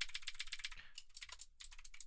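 Typing on a computer keyboard: a quick, irregular run of faint keystrokes.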